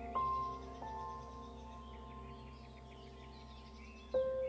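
Gentle background music: two soft notes struck in the first second that hold and slowly fade, with faint bird chirping high above.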